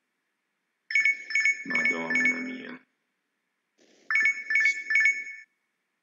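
Mobile phone ringtone sounding for an incoming call, played as two bursts of quickly repeated electronic tones, the second starting about three seconds after the first.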